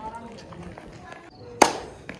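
A single sharp hand clap about one and a half seconds in, the loudest sound here, over a faint open-air background.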